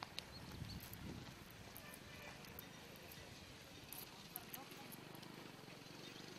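Faint outdoor ambience with low, indistinct voices and a few light clicks or taps, one near the start and a couple about four seconds in.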